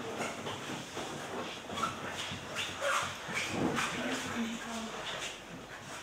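Indistinct voices talking quietly in a meeting hall, with a few brief knocks or rustles.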